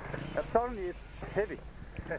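A man's voice, faint, saying a few short words in two brief bursts, over a faint steady low hum.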